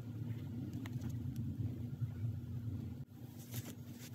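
A steady low hum of background noise, with a few faint ticks. It drops out briefly about three seconds in, then carries on.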